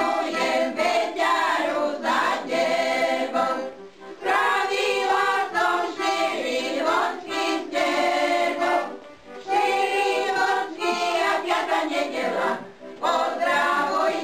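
A group of voices singing a song together, phrase after phrase, with short breaks about four, nine and thirteen seconds in.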